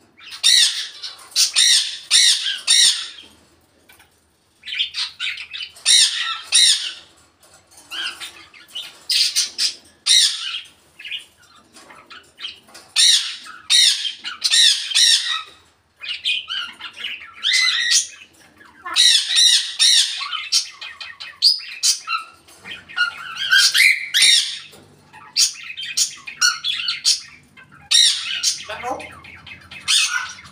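African grey parrot squawking and calling in repeated bouts of high-pitched calls, each a second or two long, with short pauses between.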